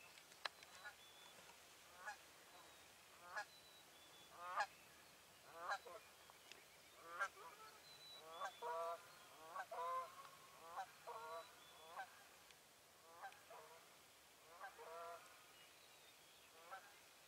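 Wild turkey yelping: short runs of falling notes repeated about once a second. The yelps grow denser and louder in the middle, then thin out. There is a sharp click just after the start.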